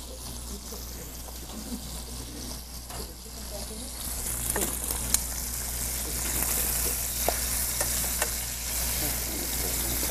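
Flour-dredged chicken cutlets sizzling in hot oil in a skillet. The sizzle grows louder about four seconds in, with a few light clicks.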